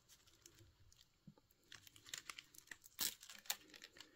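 Dry lower leaves being pulled off a pineapple crown by hand, faint crackling and tearing. It is near quiet at first, then scattered crackles and snaps, the loudest about three seconds in.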